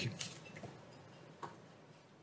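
The end of a spoken "you", then a quiet room with a few faint, short clicks. The sharpest click comes about one and a half seconds in.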